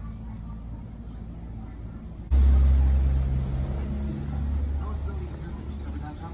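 Low vehicle-engine rumble of street traffic that comes in abruptly a little over two seconds in and slowly fades, with faint voices under it.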